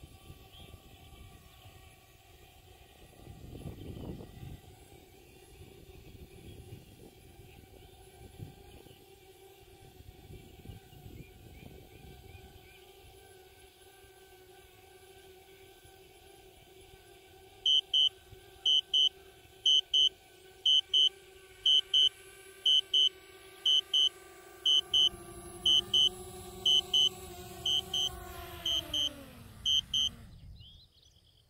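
DJI Spark quadcopter's propellers humming steadily in flight. From a little past halfway, its low-battery warning sounds as loud high beeps in pairs, about once a second. Near the end the propeller hum falls in pitch and stops as the drone lands and its motors spin down.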